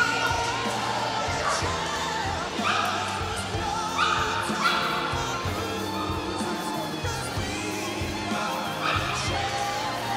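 A dog barking several times in short, sharp barks while running an agility course, over steady music.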